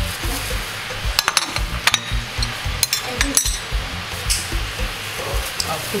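A china plate clinking and tapping several times against a stainless steel bowl as ground pepper is scraped off it onto pieces of catfish, over background music with a regular low beat.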